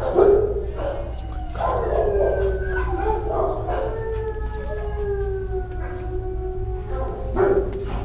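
A dog howls one long drawn-out call that sinks slowly in pitch, with shorter barks and yelps before it and another loud yelp near the end. A steady low hum runs underneath.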